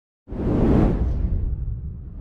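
Cinematic whoosh sound effect that starts suddenly about a quarter second in, with a deep rumble underneath. The hiss fades within about a second while the rumble carries on, a logo-reveal intro sting.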